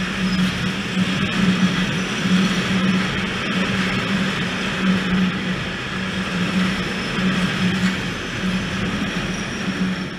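A freight train of tank wagons running past at speed close by: a continuous, steady wheel-and-rail noise with an uneven low hum, until the last wagons go by.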